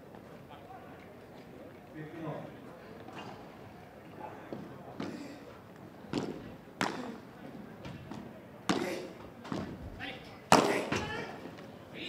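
Padel ball struck back and forth in a rally: about half a dozen sharp racket pops spaced roughly a second apart from about five seconds in, the loudest near the end, over background crowd voices.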